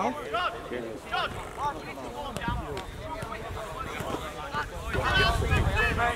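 Scattered voices of players and spectators talking and calling across an open sports pitch. Wind rumbles on the microphone near the end.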